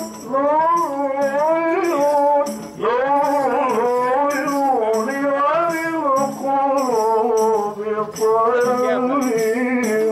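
Qaswida: a male voice sings a long, ornamented Swahili devotional melody over a steady, high-pitched, shaken percussion beat.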